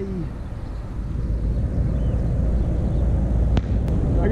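Wind rumbling on a camera microphone high up on a crane hook, a steady low rumble that grows slightly louder, with two faint clicks near the end.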